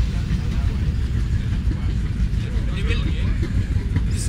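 Faint voices of men talking over a steady low outdoor rumble.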